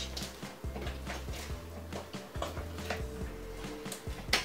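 Quiet background music over the wet squishing and crackling of fluffy slime, made of glue and shaving foam, being kneaded and folded by hand in a plastic tub while the glue is still being mixed in.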